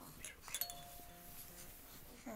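A brief rattle, then a single bell-like chime whose tone holds for about a second and fades out.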